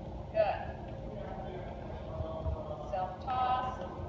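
Short spoken calls in a gymnasium: a sharp call about half a second in and a longer one near the end, with a couple of soft low thumps in between.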